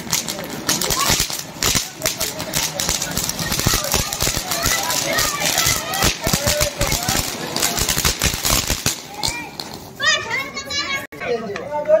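Ground fountain firework (anar) spraying sparks with a dense, crackling hiss for about nine seconds before dying down. Children's voices follow near the end.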